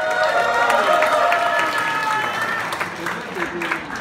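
Audience clapping. A voice holds a long note over the first two seconds, and the clapping thins out near the end.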